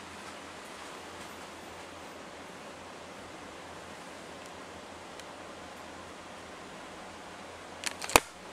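Steady hiss of room tone and recording noise with a faint low hum, and a short click just before the end.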